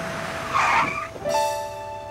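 A car's tyres screeching briefly as it brakes hard, a cartoon sound effect about half a second in, over background music with held chords.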